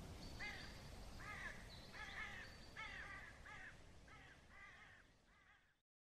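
A bird calling repeatedly, faint, in a string of about nine short calls that fade out and stop just before the end.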